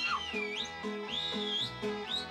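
Serbian folk band music: plucked tamburica-type strings keep a steady bouncing beat, and a high, whistle-like melody line swoops up and down in pitch above them.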